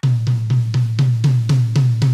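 Single strokes on a tom of a drum kit, played with German grip at an even pace of about four a second, each hit ringing at one low pitch into the next.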